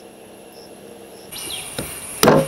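Insects, crickets by their sound, chirring steadily in a thin high tone that grows louder about two-thirds of the way through, with a single sharp knock near the end.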